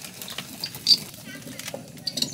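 A hand-turned stone mill grinding dried kernels: stone rubbing on stone with a low, rough grinding and a few sharp clicks as the grain cracks.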